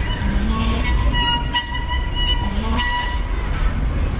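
High-pitched calls from children at a playground, short and repeated, with a few lower adult voices, over a steady low rumble of distant traffic.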